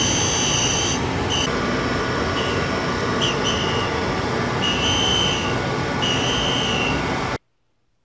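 Tool and cutter grinder wheel grinding a single-flute step drill, skimming damage off the beat-up leading edge of a step: a steady grinding hiss with a high whine that comes and goes. It stops abruptly about seven seconds in.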